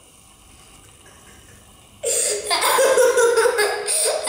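A young boy laughing hysterically. It starts suddenly about halfway in, after a short quiet pause, and is loud.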